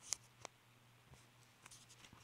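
Faint pencil scratching on paper, with a few short light clicks and taps over a low background hum.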